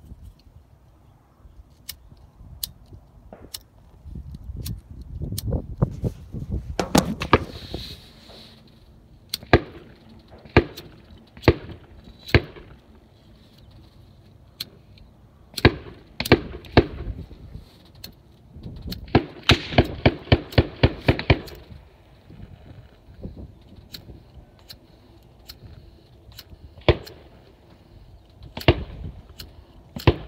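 Wind buffeting the microphone, with scattered sharp clicks and knocks and a quick run of about ten clicks a little past the middle.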